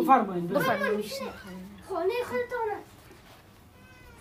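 Speech only: two short stretches of talk, with a quieter stretch near the end.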